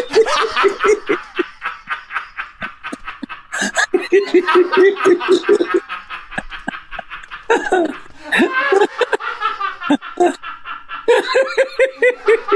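People laughing hard at a joke in several bouts, each a run of rhythmic ha-ha pulses, with short breaks between bouts.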